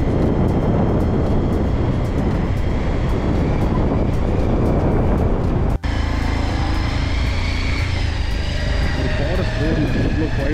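Wind rumbling on the microphone of a moving motorcycle, with the engine running at a steady cruise. A brief break a little past the middle, after which a steady whine stands out more clearly.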